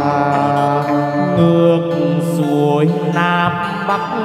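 Chầu văn ritual music: a singer holding long, drawn-out notes that slide slowly in pitch, over steady instrumental accompaniment.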